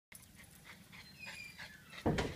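Small terrier-type dog panting faintly, short breaths a few times a second.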